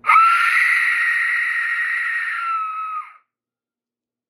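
A cast-iron Aztec death whistle blown in one long breath: a loud, harsh, shrieking blast that starts sharply, holds for about three seconds, dips slightly in pitch as it fades and then cuts off.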